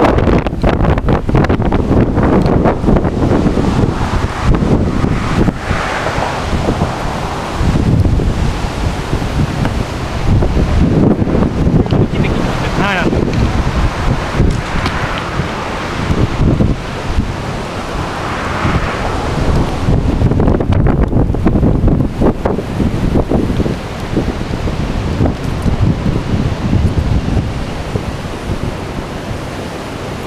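Strong, gusty wind blowing across the microphone: a loud rushing noise with low buffeting that swells and eases with the gusts.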